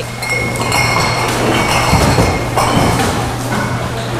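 Empty aluminium drink cans and glass bottles clinking and rattling together as they are handled and sorted, over a steady low hum.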